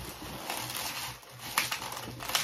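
Inflated latex modelling balloons rubbing against each other and against the hands as they are twisted into a pinch twist. The rubbing is soft at first, with a few short sharp rubs near the end.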